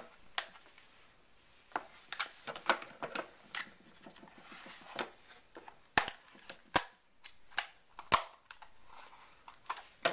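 Knife cutting into the plastic wrap of a small cardboard retail box, with scratchy strokes and sharp clicks of the packaging being handled. Three sharp clicks in the second half are the loudest sounds.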